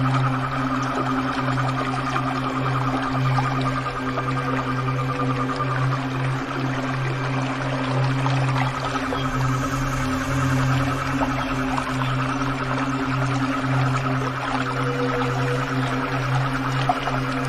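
Slow ambient relaxation music of long, held drone tones, over the steady rush of flowing water.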